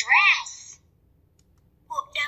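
A talking reading pen's tip clicks sharply against a book page, and the pen's small speaker at once plays a short spoken clip. Near the end a second tap sets it speaking again.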